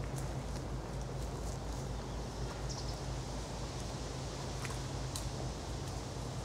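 Highland cow browsing leaves from an overhanging branch: a few scattered rustles and small snaps of twigs and leaves over a steady low hum.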